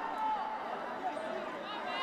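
Faint, distant voices of footballers talking and calling out on the pitch, with no crowd noise from the empty stands.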